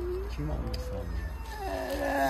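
A person's voice making short, soft, pitched vocal sounds, quieter than the loud drawn-out voice just before and after.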